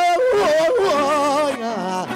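A man singing a long wordless vowel melisma in the Panamanian décima torrente lamento style, his voice wavering and gliding up and down, with guitars playing beneath.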